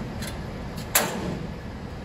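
Spring-loaded metal entry gate of a Haulotte Star 20 lift platform swinging shut, latching with one sharp click about a second in.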